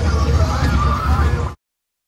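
Outdoor crowd ambience, indistinct voices over a steady low rumble, cut off abruptly to silence about one and a half seconds in.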